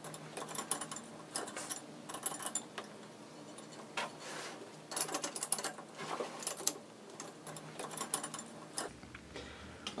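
Irregular small metal clicks and clinks of a box wrench turning the nuts on the column's bottom tie rods, tightening them down against the flange.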